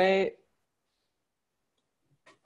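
A woman's voice saying one word, which ends about half a second in, then near silence.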